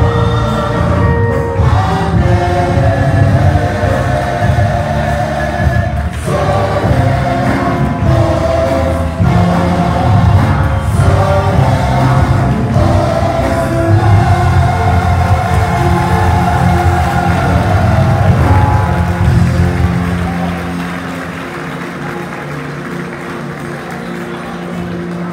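Choir singing held, pitched lines over a heavy bass, growing quieter near the end.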